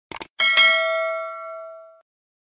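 Two quick clicks, then a single bell strike that rings with several overtones and dies away over about a second and a half before stopping.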